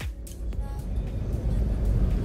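The tail of background music with a beat dies away in the first half second. Then a Mahindra Thar is heard driving, from inside the cabin: a steady low engine and road rumble.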